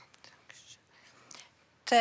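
A quiet pause with a few faint breathy, hissing sounds, then a woman starts speaking near the end.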